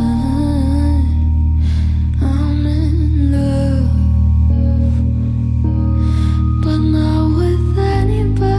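A woman singing a slow ballad live, drawing out long notes with a slight waver, over sustained keyboard chords and a deep held bass.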